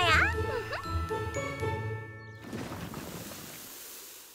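Cartoon soundtrack: a short musical cue of chiming tones, followed from about two and a half seconds in by a rushing sound effect that fades away.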